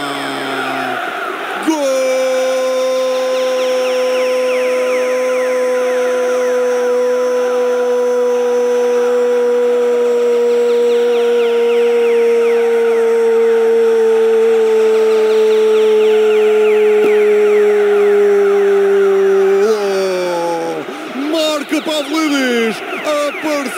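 A radio football commentator's single long drawn-out goal shout, held for about eighteen seconds from about two seconds in, its pitch sinking slowly toward the end before it breaks off into broken voice near the end.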